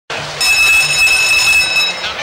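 A steady electronic buzzer tone, about a second and a half long, starting about half a second in: a show-jumping judges' signal sounding over the arena.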